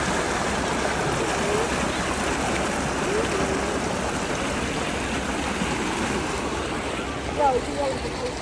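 A steady rushing noise, like running water, with faint voices in the background.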